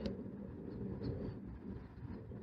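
Faint, low background rumble with no distinct sound event; the finger tapping the touchscreen makes no clear sound.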